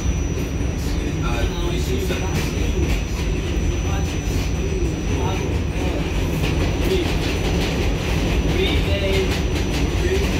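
R46 subway car running along the track, heard from inside the car: a steady low rumble with scattered clicks from the wheels, and a thin high whine that drops out about halfway through.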